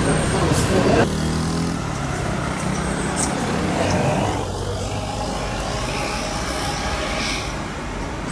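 Street traffic: motor vehicle engines running, with a steady wash of road noise. About a second in the sound changes abruptly, and a low engine hum stands out for about a second.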